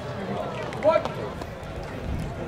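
Outdoor ballpark ambience of scattered voices, with one short, loud shouted call just under a second in.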